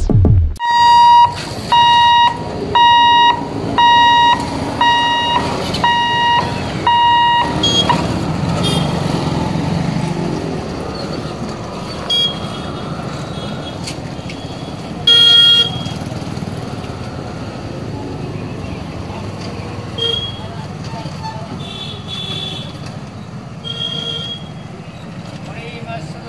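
An electronic beeper sounds about seven times, roughly once a second. Then comes the running of small road vehicles crossing a railway level crossing, with a loud horn toot about midway and several shorter horn beeps.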